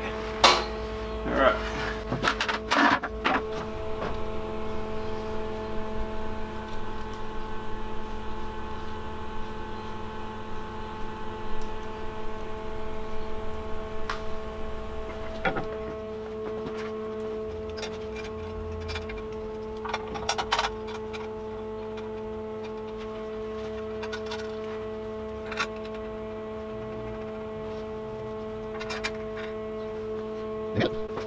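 Scattered metallic clanks and knocks as the steel bender and its mount are handled and fitted, over a steady shop hum made of several constant pitches. A cluster of knocks comes in the first few seconds and another pair about two thirds of the way in.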